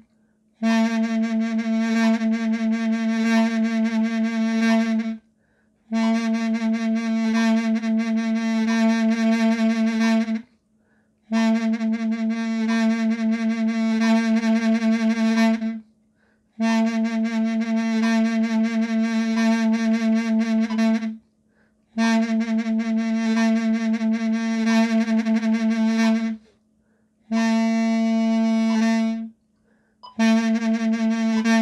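Mey, the Turkish double-reed pipe, playing one repeated note in six phrases of about four to five seconds, each split from the next by a short breath pause, the notes re-tongued within each phrase. Vibrato is laid on the tied notes, decreasing and then increasing as the exercise asks.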